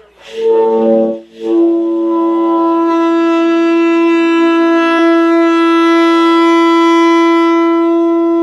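Tenor saxophone sounding a short note, then holding one long, steady overtone (harmonic) note, a demonstration of sustaining saxophone overtones.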